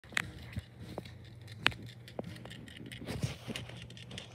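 Irregular light clicks and taps, about eight in four seconds, over a low steady hum; the sharpest comes just before the middle.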